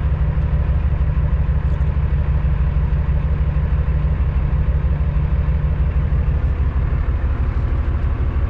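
Cummins ISX diesel engine of a 2008 Kenworth W900L running steadily, heard from inside the cab as a deep, even rumble with no revving.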